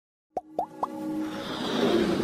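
Electronic intro sound effects: three quick plops, each sliding sharply up in pitch, about a quarter second apart, followed by a whooshing swell with synth tones building up.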